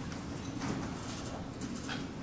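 Quiet theatre room tone between scenes: a steady low hum with a few faint knocks and rustles.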